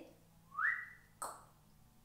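A person whistling one note that glides quickly upward and holds for a moment, ending in a short breathy puff. It is a mouth sound effect for something floating or escaping upward.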